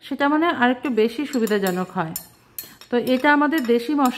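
A metal knife scraping and clinking against bowls as chopped greens are scraped from a small ceramic bowl into a glass mixing bowl. There are a few sharp clinks about halfway through, under a woman's talking.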